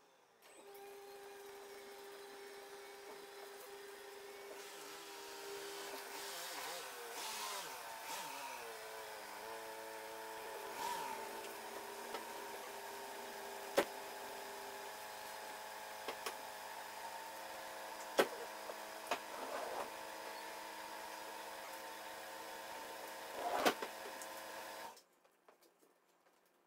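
Peugeot Partner van's engine running, its pitch sliding up and down as the van is moved into the bay, then idling steadily and cutting off suddenly about a second before the end. A few sharp knocks are heard over the idle.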